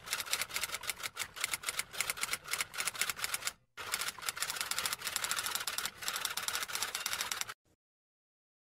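Typing sound effect: rapid, even key clicks in two runs with a brief break just before four seconds in. The clicks stop shortly before the end.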